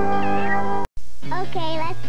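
TV channel ident music with a cartoon cat's meow, broken by a sudden split-second dropout a little under a second in. Right after it, a new segment starts with a wavering, warbling voice over music.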